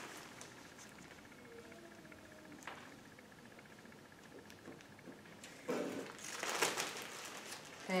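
Quiet room with a few faint light taps, then from nearly six seconds in a plastic bag of potting soil rustling and crinkling as it is picked up and handled.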